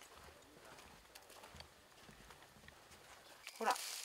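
Footsteps on dry leaf litter and twigs: scattered light crackles and steps. A man's voice begins near the end.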